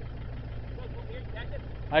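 A vehicle engine idling steadily with a low hum, with faint distant voices about a second in.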